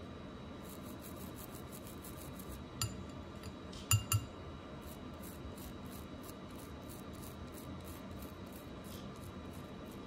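Toothbrush bristles scrubbing a gold diamond ring in short strokes, about three a second. Three sharp clicks stand out a few seconds in, two of them close together.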